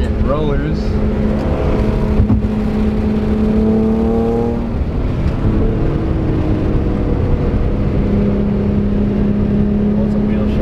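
Car engine heard from inside a moving car's cabin, rising in pitch under acceleration for about four and a half seconds, then dropping back and running steadily at cruising speed.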